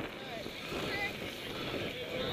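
Wind buffeting the microphone of a camera on a moving mountain bike, a steady rumbling noise.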